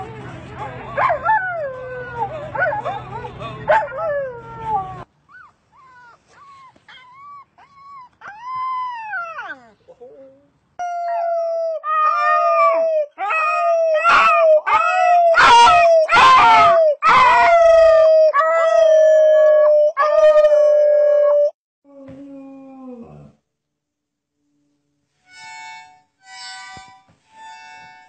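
Dogs howling and whining in a string of short pieces: wavering, gliding cries for the first few seconds, then one long, steady howl for about ten seconds in the middle, and short high calls near the end.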